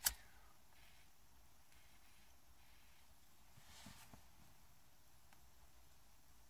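A lighter clicks once, sharply, as a tobacco pipe is lit, then near silence in a small enclosed space, broken only by a faint soft sound about four seconds in.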